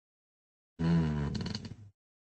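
A man's short wordless vocal sound, about a second long, starting a little under a second in. It begins as a pitched hum and breaks up into quick pulses as it fades.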